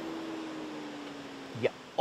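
Faint steady hum and hiss from the Mercedes-Benz GLS 580 at a standstill, the tone sinking slightly and fading as the mild-hybrid stop-start system shuts down its twin-turbo V8, a shutdown barely heard.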